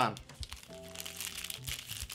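Foil Pokémon booster pack wrapper crinkling as it is handled and crumpled. Soft background music with a held chord comes in under it about a third of the way in.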